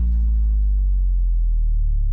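A steady, loud low droning hum with little above it.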